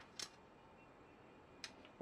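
Near silence, with a faint click just after the start and another near the end, typical of pieces of cut copper bus bar being handled.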